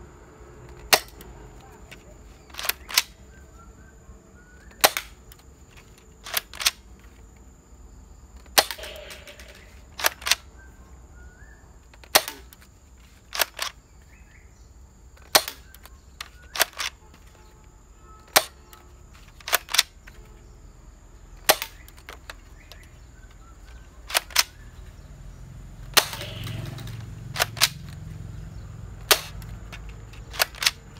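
Battery-powered toy M416 gel-bead blaster firing single shots in semi-auto mode: about two dozen sharp shots, one to two seconds apart, some in quick pairs.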